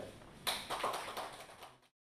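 Light applause of hand claps, starting about half a second in and fading away before the end.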